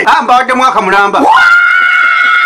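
A voice talking, then about two-thirds of the way in a long, high-pitched scream that holds an almost steady pitch.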